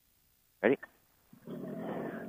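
Vittorazi Atom 80, an 80cc two-stroke paramotor engine, pull-started with one hand: it catches about one and a half seconds in and settles into a steady, quiet run.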